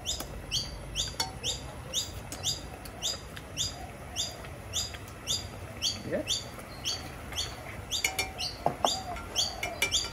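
A bird calling a short, high chirp that slides downward, repeated steadily about twice a second.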